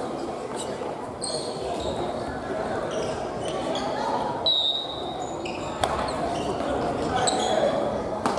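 Family badminton rally in a gymnasium: a few sharp racket hits on the shuttle, short sneaker squeaks on the wooden floor, and a hubbub of many voices echoing around the hall.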